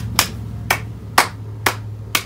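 One person clapping hands slowly, four claps about half a second apart, over a steady low hum.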